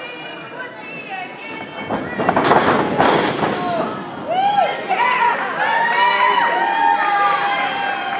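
Thuds of wrestlers hitting the ring mat about two seconds in, under a rise of crowd noise. Then spectators, many of them children, shout and cheer in high voices until the end.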